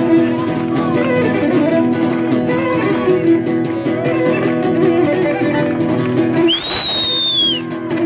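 Live Greek folk dance music on violin and a plucked string instrument, with hand clapping. About six and a half seconds in, a shrill whistle rises and falls for about a second.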